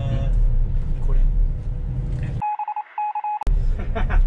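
Bus engine and road rumble heard inside the cabin, with some talk. About two and a half seconds in, the rumble cuts out and two short electronic beeps of the same pitch sound, a dubbed-in sound effect. The rumble comes back suddenly after them.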